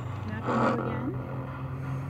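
Spirit box sweeping radio stations: a steady low hum, with a short burst of static and a brief voice-like fragment about half a second in.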